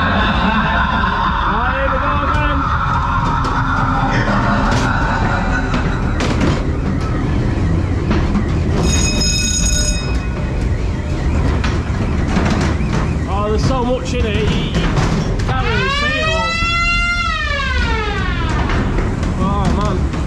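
Funfair ghost train ride: the car rumbles steadily along its track while the ride's spooky sound effects play, starting with fairground music outside, then a steady electronic tone for about a second partway through and wailing effects that rise and fall in pitch near the end.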